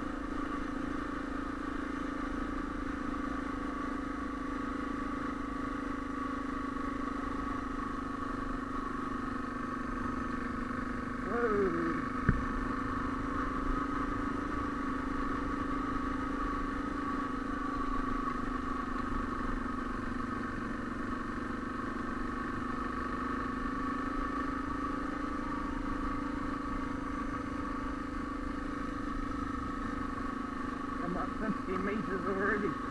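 Suzuki DR650 single-cylinder engine running at a steady pace while the bike is ridden, a constant even drone, with one sharp knock about twelve seconds in.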